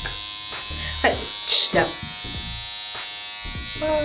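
Electric hair clippers running with a steady buzz, held in the hand rather than cutting.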